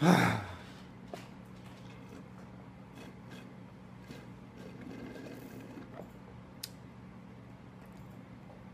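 A man's loud sigh at the very start, then faint sucking through a straw on a half-frozen Slurpee, with a soft swell of slurping about halfway through. A steady low hum runs underneath.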